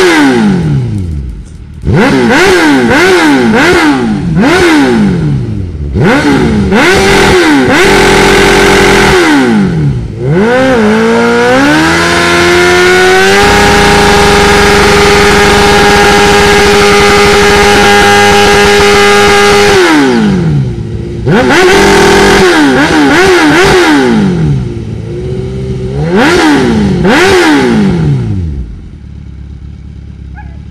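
Suzuki GSX-R1000's inline-four engine revved hard during a burnout, the rear tyre spinning on the pavement. It runs in a string of quick rev blips, climbs to a long steady hold at high revs through the middle, blips again, then drops back to idle near the end.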